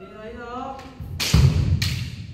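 Kendo players in close combat: a drawn-out kiai shout, then about a second in a loud, heavy thud of a foot stamping on the wooden floor with the noisy crash of a strike, and a sharp crack near the end.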